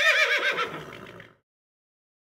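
A horse whinny: one high call that quavers and slides down in pitch, fading out about a second and a half in.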